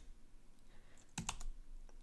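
A few faint computer keyboard keystrokes about a second in: a single letter typed, then Enter pressed.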